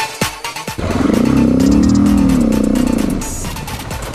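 Motorcycle engine revving up and back down over about two seconds, under electronic music with a steady beat.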